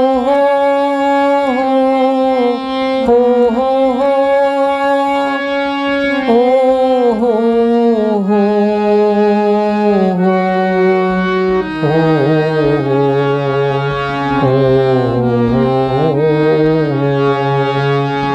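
Harmonium with a male voice singing a wordless 'aa' (aakar) over it, moving from note to note of the scale with slides between them. It is a vocal riyaz practice exercise on the pure notes, stepping down in the second half to end on a long low held note.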